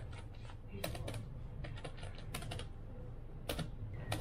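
Keys of a desktop calculator pressed one after another: short, light plastic clicks at an uneven pace as a sum is entered.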